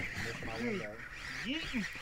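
Two short drawn-out cries from men's voices, each rising and then falling in pitch, shouted playfully like the "yeet" call just before.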